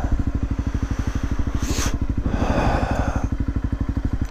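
Single-cylinder engine of a Honda CRF dual-sport motorcycle running at low, steady revs as the bike creeps over leaf-covered ground, its firing pulses even throughout. A brief burst of noise comes a little before halfway.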